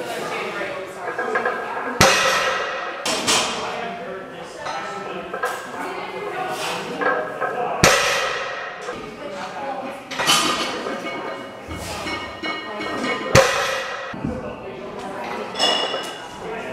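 Heavy deadlift bar loaded to 465 lb on steel wagon wheels set down on the floor three times between reps, each a sharp clank with a brief ringing tail, a little under six seconds apart.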